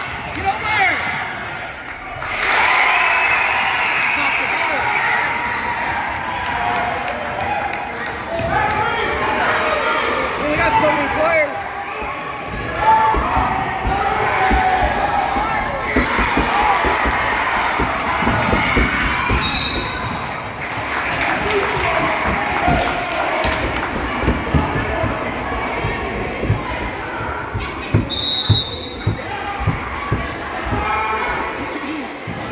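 Basketball being dribbled on a gym's hardwood floor, with footfalls and the voices of players and spectators echoing in the hall. Two short high referee-whistle blasts sound, one about twenty seconds in and one near the end, the second stopping play for a free throw.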